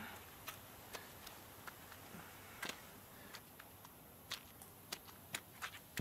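Faint, scattered clicks, about a dozen at uneven intervals, over low background hiss.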